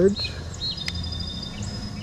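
A small bird sings outdoors: a short chirp, then a thin high trill held for over a second, over a faint steady low hum.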